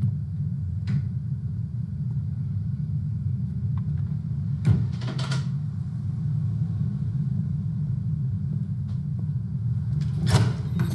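A steady low background rumble, with a few faint soft knocks about a second in and around the middle.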